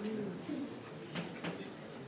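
Chalk writing on a blackboard: a handful of short, sharp taps and scratches as a word is written, about half a second apart.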